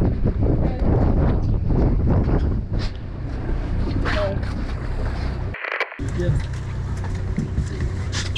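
Charter boat's engine humming steadily low, with wind rushing on the microphone and faint voices on deck. All sound cuts out for a split second a little before six seconds in.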